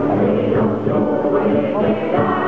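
A rondalla playing: a group of voices singing together over strummed guitars, plucked lute-type string instruments and a flute.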